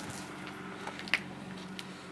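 Faint steady hum with a few light clicks scattered through it.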